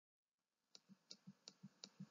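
Faint, rapid clicking, about five or six clicks a second, starting almost a second in after a moment of dead silence.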